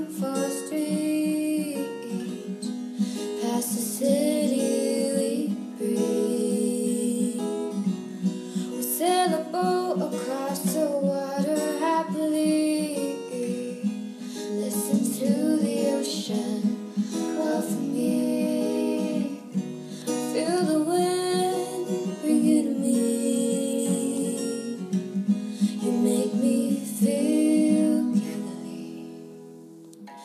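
Acoustic guitar strumming a G–D–Em–C chord progression, with a female voice singing the melody over it. The music dips in level near the end.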